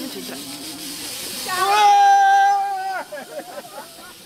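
Beer jetting with a hiss from a shaken bottle as it is sprayed over people, with a long high-pitched scream held for about a second and a half starting near the middle.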